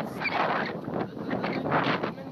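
Gusts of wind buffeting the microphone in a run of irregular rushing bursts, over the wash of small waves breaking on a sandy shore.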